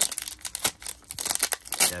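Football trading cards handled at close range: irregular rustling and clicking as cards are slid and flicked through the hands.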